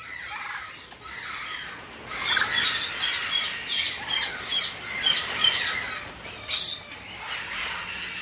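Birds in an aviary chirping and squawking in a quick, repeated series, about two to three calls a second, with two sharp clicks, one under three seconds in and another just past six and a half seconds.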